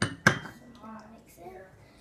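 Two sharp clinks of glassware about a quarter second apart, as a stemmed glass bowl is knocked down onto a glass tabletop, followed by a faint voice.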